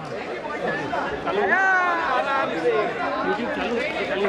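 Several men's voices talking and calling out across the ground, overlapping as chatter.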